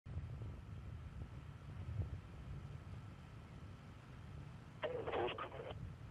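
A low, uneven rumble of wind and pad ambience on the launch-pad feed before the Soyuz is fuelled for lift-off, with a faint steady hum tone. Near the end comes a short, muffled burst that sounds like radio chatter.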